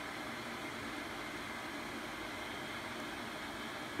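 Steady, even hiss of background room noise with no distinct sounds in it.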